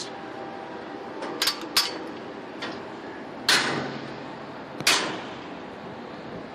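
Footsteps on a container gantry crane's steel grating walkway: two light taps about a second and a half in, then two loud metallic hits, about three and a half and five seconds in. A steady hiss runs underneath.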